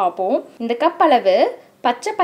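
A woman speaking, with a brief pause near the end.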